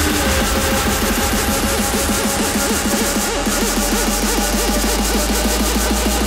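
Electro house dance music from a DJ mix: a heavy sustained bass under a wobbling synth line that sweeps up and down in pitch several times a second.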